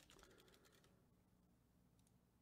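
Very faint typing on a computer keyboard, a quick run of soft clicks that stops about a second in; after that, near silence.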